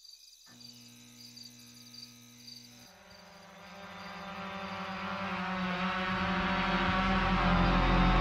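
Crickets chirping while a low steady hum sets in; from about three seconds in, the buzz of a quadcopter drone's rotors grows steadily louder as it approaches and comes to hover.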